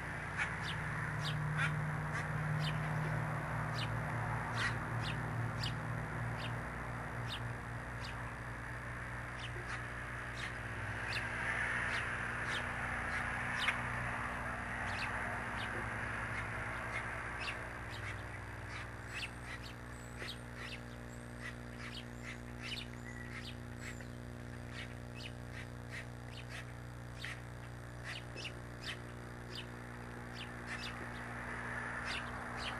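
Birds giving short chirps, repeated irregularly, over a steady low hum.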